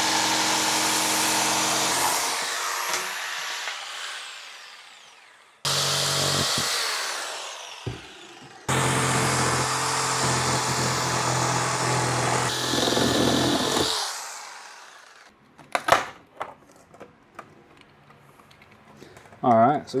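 Ryobi jigsaw cutting through a LiFePO4 battery's case in three runs, the motor winding down after each: the first ending about two seconds in, the second short, the third running from about 9 to 14 seconds. Then a knock and light clicks of the case being handled.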